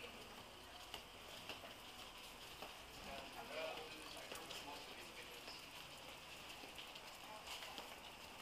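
Quiet sound of walking down a narrow paved lane: scattered faint footsteps with faint voices of passers-by.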